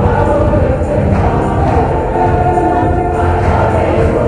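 A choir singing a hymn, voices holding sustained chords.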